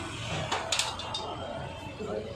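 People talking, with a few sharp clicks or light knocks about half a second to a second in.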